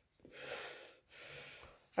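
A person breathing close to the microphone: two soft breaths, the first starting just after the beginning and the second, quieter one about a second later.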